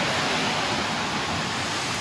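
Steady hiss of rain and of traffic on a wet street.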